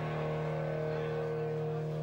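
Electric guitar chord left ringing through the amplifier: a steady held drone of several pitches, with no new strums.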